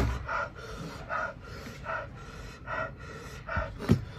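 A person panting hard through an open mouth, one breathy huff about every 0.8 seconds, typical of trying to cool a mouth burning from the Jolo chip. A sharp knock right at the start and another near the end.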